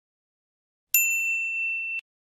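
A single bell ding sound effect of an animated notification-bell button: silence, then one bright, high-pitched strike about a second in that rings on steadily until it is cut off abruptly.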